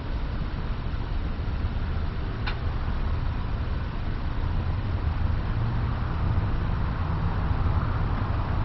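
Car engine idling with a steady low rumble, and a single brief click about two and a half seconds in.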